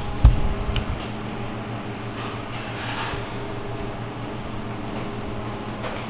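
Camera being picked up and handled, with a sharp bump just after the start and a few smaller knocks, then a steady low hum in the room.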